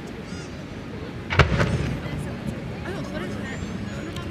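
A single sharp bang about a second and a half in, with a short rumbling tail: a 30 cm (shakudama, No.10) aerial firework shell being launched from its mortar. Crowd voices chatter throughout.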